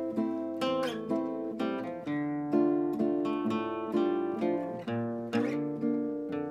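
Two acoustic guitars playing an instrumental passage together: strummed chords and picked notes every second or so, left ringing between the strokes.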